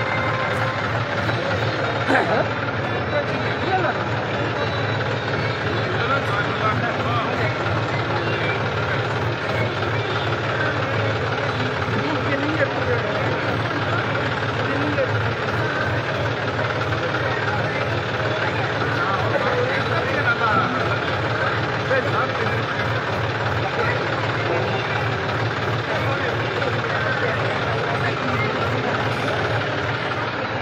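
Tractor engine idling steadily, with people talking around it.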